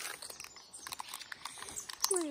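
Plastic blind-bag wrapper of a Super Zings figure packet crinkling and tearing as it is pulled open: a faint, irregular run of small crackles.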